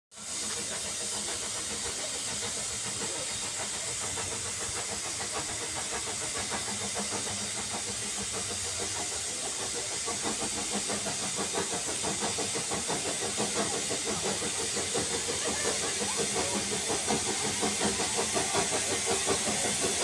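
Narrow-gauge steam tank locomotive No. 190 arriving with its train: a steady steam hiss with rhythmic exhaust chuffs that grow louder as it draws near.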